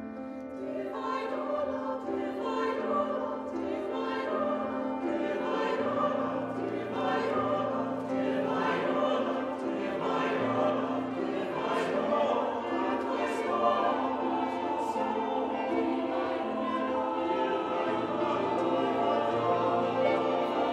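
Mixed chamber choir singing a contemporary minimalist choral work, with piano and violin accompaniment. The voices come in over a held chord about a second in, and lower voices join partway through, thickening the sound.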